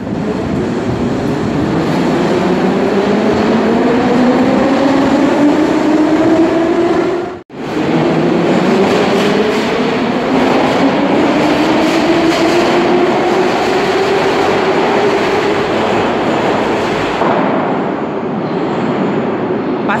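Metro train running and accelerating, with a loud rumble and a motor whine that rises slowly in pitch. The sound breaks off abruptly about seven seconds in, and then a second acceleration follows with the whine again climbing steadily before easing off near the end.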